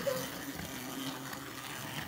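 Battery-powered Thomas & Friends toy train engines, their small geared motors whirring steadily as they run along plastic track.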